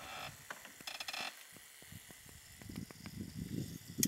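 A compact camera's zoom motor ticking and whirring as the lens zooms out, a quiet run of irregular small clicks, with two short high-pitched sounds in the first second and a half.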